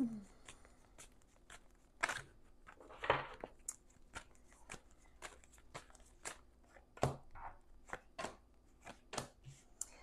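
Tarot cards being drawn from the deck and laid down one at a time: a quiet, irregular run of light clicks and taps, with a few louder snaps about 2, 3 and 7 seconds in.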